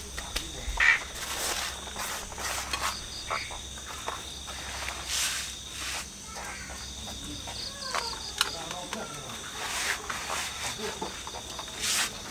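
Crickets chirping in a steady high trill, with scattered short scrapes and rustles of hands pressing sand and soil into a bonsai pot.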